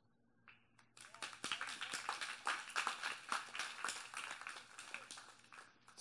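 Audience clapping, starting about a second in and fading toward the end.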